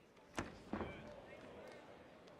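Two thumps from the Muay Thai bout in the ring, about a third of a second apart, the first the sharper, followed by faint voices in the hall.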